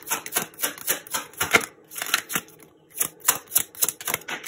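A deck of tarot cards being shuffled by hand: quick, crisp card-on-card slaps, about three to four a second, with a short pause a little past halfway.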